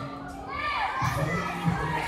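Children shouting and calling over a general crowd din, with high voices sliding up and down in pitch.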